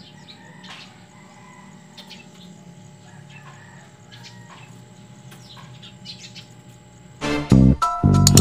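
Quiet outdoor background with scattered short bird chirps. About seven seconds in, loud electronic background music with record scratching starts suddenly.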